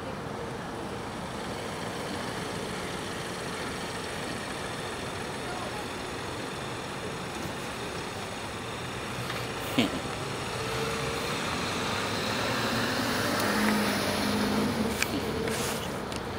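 Street traffic noise with a car moving past close by; a vehicle grows louder from about eleven seconds in and peaks near the end, with a sharp click about ten seconds in.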